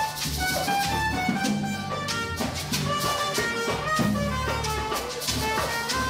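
A live band of trumpets, French horn and other brass over a drum kit plays, with a trumpet carrying the melody in a series of sustained notes and steady drum strikes underneath.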